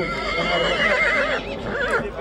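A horse whinnying: one long, quavering call of over a second, then a shorter call near the end.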